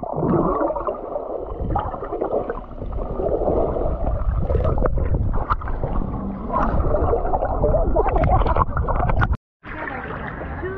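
Muffled underwater sound from a camera submerged in the sea while swimming: water rushing and gurgling, with scattered clicks and knocks. The sound cuts out briefly near the end.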